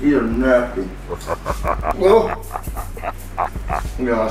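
A man whimpering in pain from the burn of very hot chips: a wavering, pitched moan at first, then a run of short, quick huffs and whimpers, about four a second.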